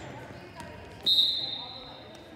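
Referee's whistle blown once: a single high, steady blast that starts sharply about a second in and lasts just under a second, over low gym chatter.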